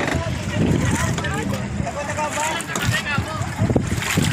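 People's voices talking over a rumble of wind on the microphone and water around a bamboo raft.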